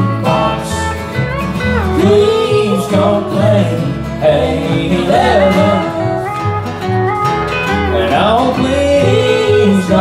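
Live country band playing an instrumental break: acoustic guitar strumming over a steady upright bass pulse, with a pedal steel guitar sliding up and down through the lead.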